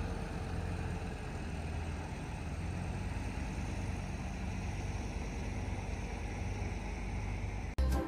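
Diesel engine of a Caterpillar 385C tracked excavator running steadily under load as the machine drives onto a lowboy trailer. The sound cuts off suddenly near the end.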